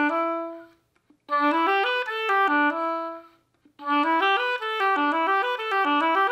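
Solo oboe playing a smooth, connected exercise of notes leaping up and down between registers, in three phrases with brief breaks between them. It practises an even, flowing sound over the leaps.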